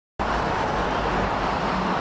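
Steady city street traffic noise, a wash of passing cars with a faint low engine hum near the end.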